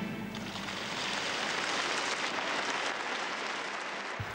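Audience applause, a steady even clapping that follows the end of a live song, the last of the music fading out as it begins.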